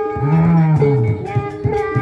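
Live jaranan accompaniment music: a sustained pitched melody over a repeated low note that bends up and then down, twice.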